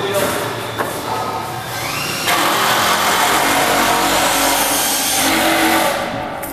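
A machine starts up with a short rising whine about two seconds in, then runs as a loud, steady rushing hiss that stops just before the end.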